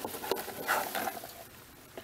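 Faint rustling and light clicking of coconut husk chip bedding and a plastic hide box being shifted by hand in a plastic tub, dying away about halfway through.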